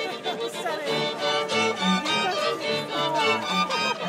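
A string quartet, bowed violins with a cello, playing a piece. Lower bass notes join the melody about a second in, with faint chatter of voices behind.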